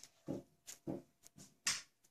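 Several short, faint sounds: soft voice-like mutters or breaths from a person and a few light clicks, with one louder hissy sound about three-quarters of the way in.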